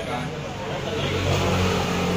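A motor vehicle's engine running, a steady low hum that grows louder from about a second in.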